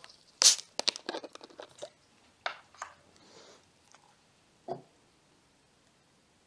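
Plastic screw cap twisted off a bottle of carbonated soda (Pepsi Max Mango): a quick hiss of gas escaping about half a second in, then a run of sharp crackling clicks as the cap turns and its seal ring breaks, with a few more clicks shortly after. A single duller knock near the end, as of the cap or bottle set down on the table.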